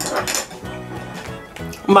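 Brief clatter of tableware, chopsticks and dishes, in the first half-second, over steady background music.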